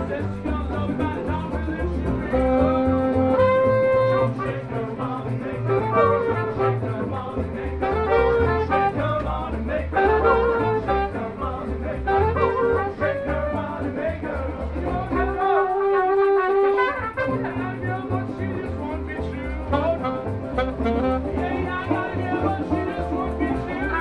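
Live street band playing: brass melody lines from trumpet and saxophone over a plucked double bass line. About two-thirds of the way through the bass drops out for a moment while a horn holds a note, then the full band comes back in.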